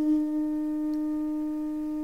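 Armenian duduk holding a single long, steady low note.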